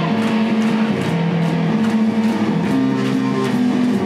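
Live rock band: electric guitars and bass guitar playing held chords through amplifiers, changing every second or so, with no vocals.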